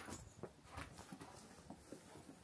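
Near silence, with a few faint, soft footsteps on packed snow.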